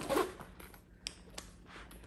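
Handling of a nylon Longchamp Le Pliage tote: faint rustling of the fabric with a few light clicks, the last near the end.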